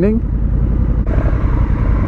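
Honda CRF1100L Africa Twin's parallel-twin engine running steadily at low revs, a deep rumble. About a second in, a steady hiss joins it.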